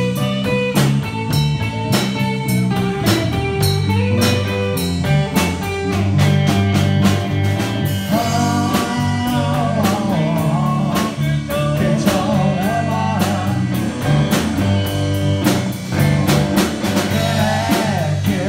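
A live band playing blues-rock: electric guitar, electric bass and a drum kit, with steady drum strikes throughout. From about eight seconds in, a wavering, bending melody line rises above the band.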